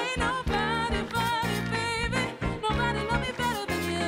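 Band music with a swing feel, part of a song with a female singer; a lead melody wavers up and down in pitch over a steady bass line.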